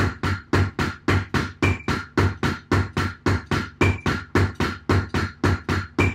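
Double kick pedal practice: the two beaters alternate in a slow, even stream of about four strokes a second, one foot landing a deeper thump than the other. This is the slow starting tempo of a speed-building drill.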